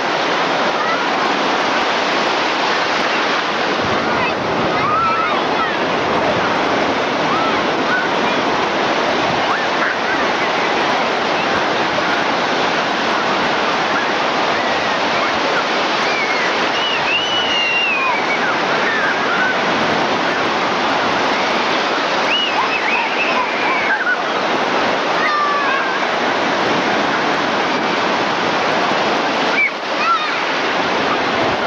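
Ocean surf breaking and washing in, a steady loud rush. Faint distant voices call out a few times over it, about 5 seconds in and again past the middle.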